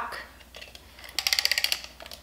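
Santa jukebox music box's wind-up mechanism being turned: a half-second burst of rapid ratcheting clicks a little past the middle.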